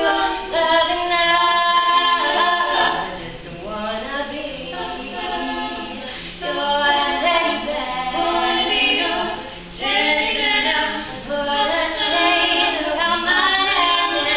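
Female a cappella group of four singing in harmony, with no instruments.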